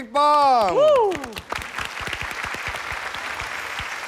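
Studio audience applause begins about a second and a half in, following a loud, drawn-out call from a man's voice whose pitch falls.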